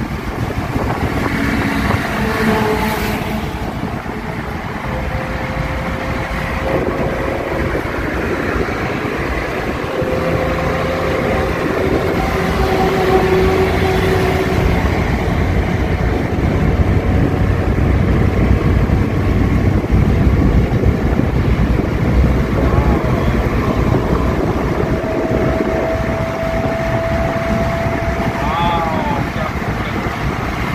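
Steady road and wind noise inside a Maruti Suzuki Eeco van cruising at highway speed, with the engine under it. The noise grows louder through the middle of the stretch.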